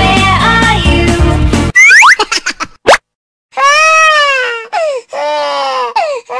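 Children's song backing music stops about two seconds in, followed by a few quick rising cartoon sound effects. After a short silence, a baby cries in long wails that rise and fall in pitch.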